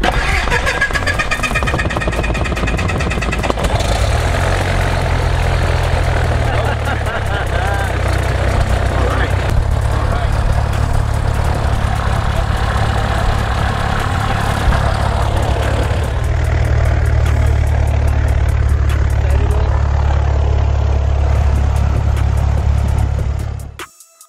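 Single-engine Cessna's piston engine and propeller just after start-up, heard from inside the cabin, running steadily; its note steps up about four seconds in.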